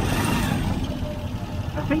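Motorcycle engine of a Philippine tricycle, a motorbike with a passenger sidecar, running with a steady low rumble.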